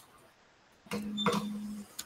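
Faint steady low hum with light rustling from an open video-call microphone. It cuts in about a second in and drops out again shortly before a brief click at the end.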